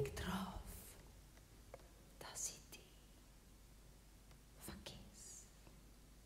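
A woman whispering softly into a vocal microphone: a breathy phrase right at the start, then a few short, hissy whispers about two and a half and five seconds in, faint over a hush.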